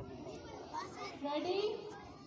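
Schoolchildren's chatter: several young voices talking and calling over one another, a little louder for a moment just past the middle.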